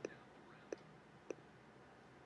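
Three short, sharp computer mouse clicks, a little over half a second apart, over faint room tone.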